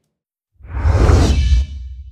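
Broadcast logo sting sound effect: after a brief silence, a loud whoosh with a deep bass rumble underneath comes in about half a second in. It lasts about a second, then dies away with a faint shimmering tail.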